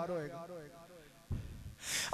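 A man's drawn-out word with wavering pitch fading away over the microphone, a moment of quiet, then a quick sharp intake of breath into the microphone just before he speaks again.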